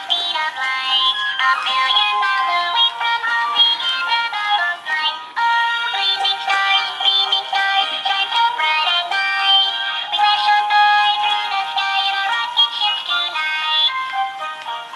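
Animated plush reindeer toy in a spacesuit playing a song with singing through its built-in speaker as it dances. The sound is thin, with almost no bass.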